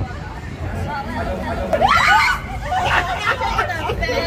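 Several people's voices chattering on a street, with one voice rising sharply into a loud cry about two seconds in.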